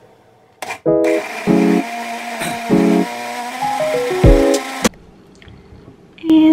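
Instrumental background music over an Oster countertop blender running on frozen fruit and oat milk. The blender starts about a second in and cuts off suddenly near the end.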